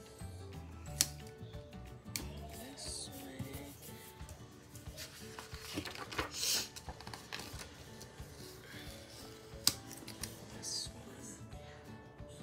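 Paper and sticker handling over background music: sticker backing rustling as stickers are peeled and pressed down, and a planner page rustling as it is lifted and shifted about halfway through. Two sharp taps come about a second in and near the end.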